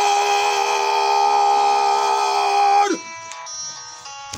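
A bugle holding one long, steady note that bends down and cuts off about three seconds in, leaving fainter lingering tones: part of a military funeral salute.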